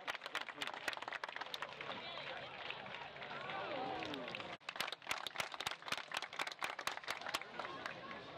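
Spectators' hand claps, sharp and rapid, come in two spells: near the start and again from about five to seven and a half seconds in. People talk in the background.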